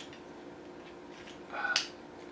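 Plastic joints of a Transformers action figure being worked by hand: about three-quarters of the way in, a brief creak ending in a sharp click as a part snaps over.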